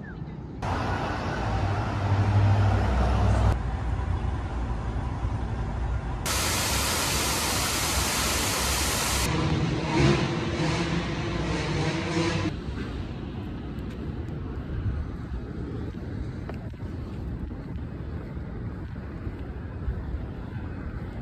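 Outdoor street noise with traffic, a steady hiss that jumps abruptly in level and character every few seconds. It is loudest and hissiest in the middle and quieter near the end.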